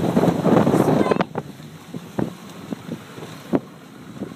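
Wind buffeting the microphone for about the first second. Then a quieter stretch with a few sharp knocks.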